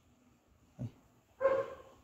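A dog barks once, about a second and a half in, after near silence.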